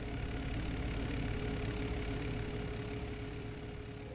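A steady low rumbling hum with a single held mid-pitched tone running through it, like an idling motor.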